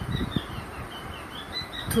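A small bird chirping repeatedly in the background, short high notes about three times a second. A low thump sounds about a third of a second in.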